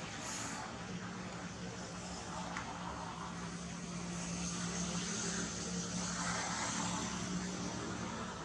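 Steady low engine drone under a constant hiss, growing slightly louder in the second half.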